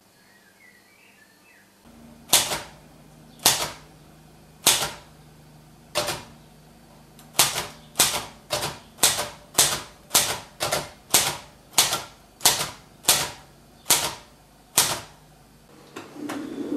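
Typewriter keys struck one at a time, about eighteen strikes. They come slowly at first, then pick up to about two a second, and stop shortly before the end, over a low steady hum.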